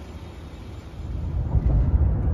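Faint outdoor ambience, then about a second in a low, steady road-and-engine rumble inside a pickup truck's cab while driving at highway speed.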